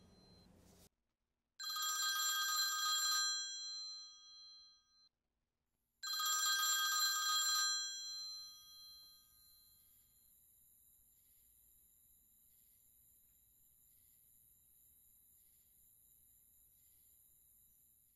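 A telephone bell ringing twice, about four seconds apart, after the fading tail of an earlier ring. Each ring is bright and metallic and dies away over a couple of seconds, leaving only a faint steady hiss.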